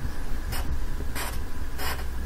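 Wooden graphite pencil writing on paper: three short strokes, about two-thirds of a second apart, as it draws the lines of a Chinese character, over a low steady rumble.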